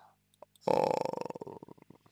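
A man's drawn-out hesitation sound "a", in a creaky, rattling voice that slows and fades out.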